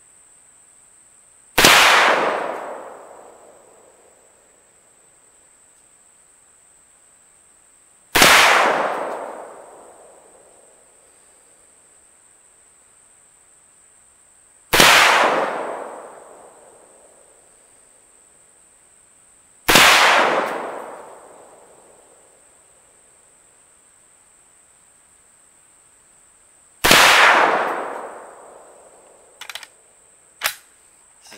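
Auto Ordnance M1 Carbine in .30 Carbine fired five times, single shots about five to seven seconds apart. Each shot is a sharp crack followed by about two seconds of echo dying away.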